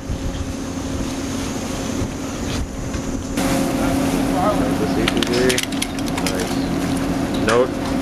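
Steady hum of a research ship's machinery on deck, with wind on the microphone. Voices come in during the second half.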